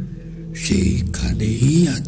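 A voice speaking from about half a second in, over a steady low music drone.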